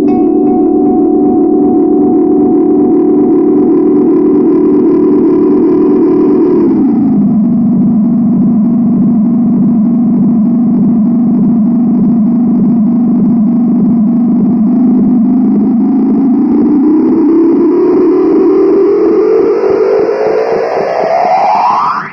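Moody Sounds Mushroom Echo guitar pedal in self-oscillation: a loud, sustained droning tone that drops in pitch about seven seconds in, holds, then glides steadily upward, rising faster and higher toward the end as a knob on the pedal is turned.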